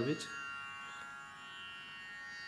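Harmonium holding a steady sustained drone, easing slightly in level.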